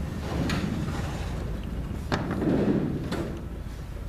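An aluminium aircraft wing being hauled by webbing straps into a wooden cradle: rubbing and scraping with three sharp knocks, the loudest stretch about two and a half seconds in.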